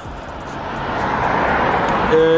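A car coming up the road, its tyre and engine noise swelling steadily louder as it approaches.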